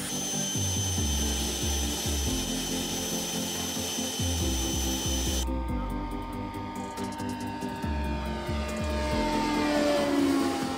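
Jetoptera fluidic thruster running: a steady rush of air with a high whine, which cuts off about five and a half seconds in. A softer whine follows and falls in pitch near the end, all over background music with a bass beat.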